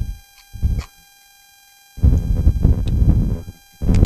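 Gusty wind buffeting the microphone, a dense irregular rumble that starts suddenly about halfway in after a brief lull and lasts about two seconds. Faint steady thin tones from a faulty microphone sit underneath.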